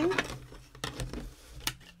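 A few sharp clicks and taps of clear acrylic plates being handled, picked up and moved off a desk.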